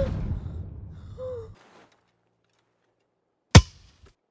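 A person's two short vocal sounds, the second about a second in, over a low rumble that cuts off about a second and a half in; after a silence, one sharp hit near the end.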